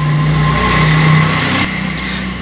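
A motor vehicle's engine running nearby, its hum and road noise swelling to a peak about a second in and then fading, like a vehicle passing.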